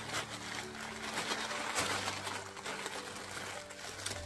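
Pink tissue paper rustling and crinkling as hands pull it open and unfold it, an irregular run of crackles.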